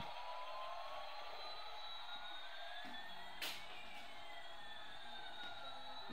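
Small toy drone's rotors whining steadily, with two motor tones sliding in pitch in opposite directions, one rising and one falling, as the rotor speeds change. A single sharp click about halfway through.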